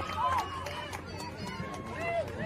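Several spectators' voices overlapping at a moderate distance, calling out and chattering, with no single voice standing out.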